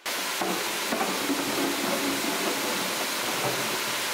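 Vegetable-peeling machine in a processing room: a steady rushing, hissing noise like running water and machinery, with a few light knocks as potatoes tumble from a plastic crate into its steel drum.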